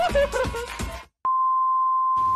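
Background music that cuts off about a second in, followed after a short gap and a click by a single steady high beep like a TV test tone, played as a glitch-transition sound effect.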